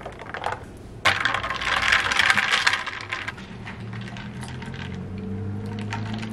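Ice cubes clinking and rattling in a plastic tumbler of iced coffee, a dense run of small clicks starting about a second in and lasting about two seconds.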